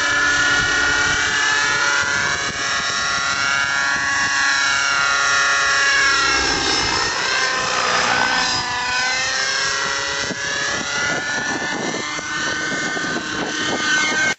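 Raptor 50 nitro-powered RC helicopter in aerobatic flight: the glow engine and rotor whine run continuously, their pitch rising and falling as it manoeuvres.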